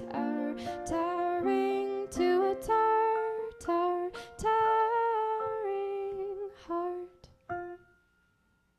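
Piano playing the closing bars of a song, the notes thinning out and dying away near the end.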